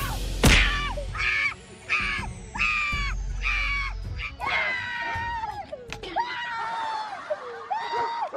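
A sharp smack about half a second in, then a run of short, repeated screams about two a second, trailing off into longer falling cries.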